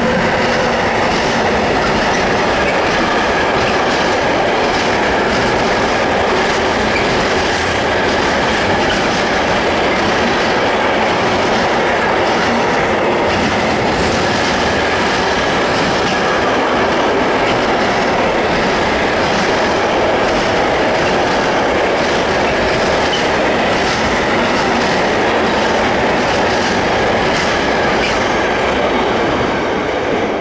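Intermodal freight train's container wagons rolling past at close range: a loud, steady rumble with a quick clatter of wheels over the rails and a faint high wheel squeal. It drops away at the very end as the last wagon passes.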